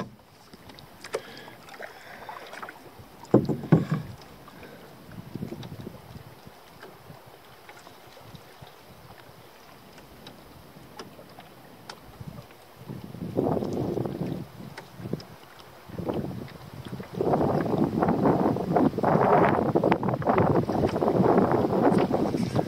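Canoe on a lake: quiet lapping of water at the hull for the first half. Then, from about halfway through, louder splashing and gurgling of water around the canoe, as with paddle strokes, running to the end.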